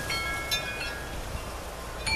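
Wind chimes ringing: a few clear tones struck near the start and again about half a second in, each ringing on and fading, over a steady low rumble.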